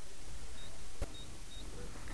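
Faint steady background hiss with a single handling click about a second in, as the camera is moved. Three very faint, short, high beeps come about half a second apart.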